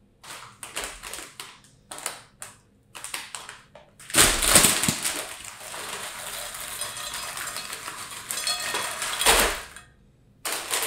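Short crackles, then Cheetos stick snacks poured from a foil bag into a glass bowl of cheese puffs, about four seconds in. The sticks clatter onto the puffs and the glass with the bag crinkling. The pour is loudest at its start and again just before it stops.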